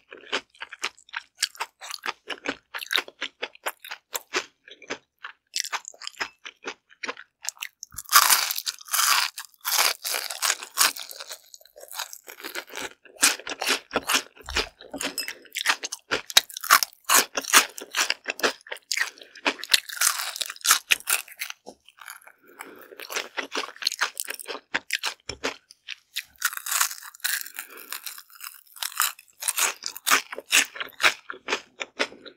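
Close-miked crunching and chewing of a crisp deep-fried perilla seed-stalk fritter, bite after bite, with several louder spells of crunching between quieter chewing.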